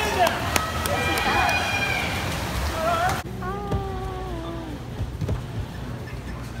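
Spectators shouting and cheering over splashing water in an echoing indoor pool hall during a swimming race. About three seconds in, this cuts off suddenly to a quieter room where a single voice calls out one long, wavering note.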